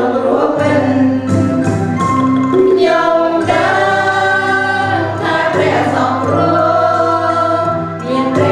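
A small mixed choir of men and women sings a Christian hymn in Khmer over a steady instrumental backing, holding some long notes.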